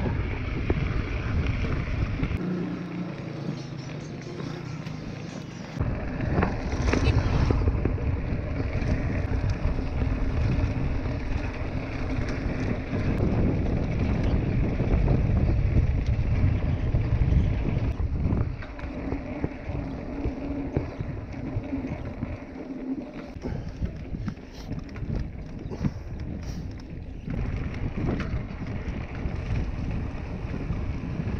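Wind rushing over an action camera's microphone as a mountain bike rolls fast down a dirt road, with the rumble of the tyres and rattle of the bike underneath. It is louder for a stretch in the middle and eases off after about 18 seconds.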